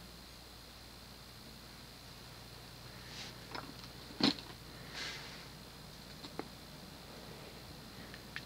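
Modern Fan Co Cirrus Hugger ceiling fan with a General Electric stack motor running on medium speed: a faint, steady hum. A few faint clicks and one sharper knock about four seconds in.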